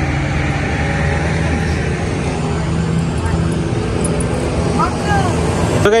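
Steady low rumble of a motor vehicle engine running, with faint voices in the background.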